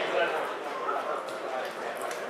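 Voices calling out on a football pitch, with no clear words.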